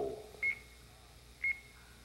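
Game-show countdown clock beeping once a second with short, high beeps, two of them about a second apart, marking off the seconds of the bonus round's 60-second time limit.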